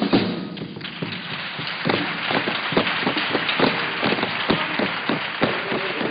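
Audience applauding, the clapping growing louder over the first two seconds.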